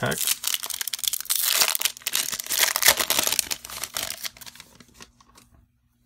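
A foil trading-card pack wrapper being torn open and crinkled by hand, a dense crackling that dies away near the end.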